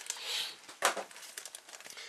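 Clear plastic bag crinkling as the decal sheet inside it is handled on the work mat, with one sharper, louder crackle just under a second in.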